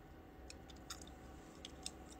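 Faint wet mouth clicks as a denture is worked loose and taken out of the mouth: a few small, separate ticks, the clearest a little under a second in and near the end.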